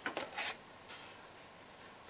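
A paper greetings card being handled and opened: a brief soft rustle and rub of card.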